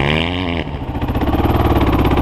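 Dirt bike engine revving briefly, its pitch rising and falling, then running steadily at low revs.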